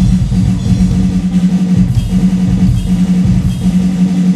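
Drum kit played with sticks, with bass drum and cymbal hits, over music that holds a steady low note.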